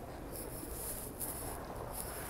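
Quiet room tone of a large indoor space: a steady low hum, with a faint high hiss that comes in shortly after the start.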